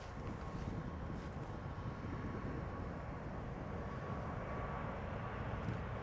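Airbus A380-800's four Engine Alliance GP7200 turbofans at takeoff thrust during the takeoff roll: a steady, deep rumble with a faint steady whine, slowly growing louder.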